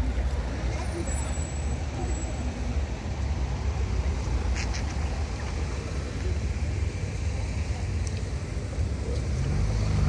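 Road traffic on a rain-wet street: passing cars and a van with tyre hiss over a steady low rumble.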